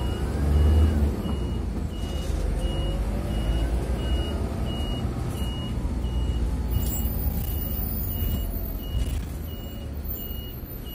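A medium-size city bus running, heard from inside the cabin: a low engine rumble with a drivetrain whine that rises and falls as it drives. Over it a short high electronic beep repeats steadily, about one and a half times a second.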